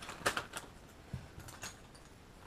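Small plastic GoPro mounts clicking against each other as they are picked up by hand: a quick cluster of light clicks early on, then a few more after about a second.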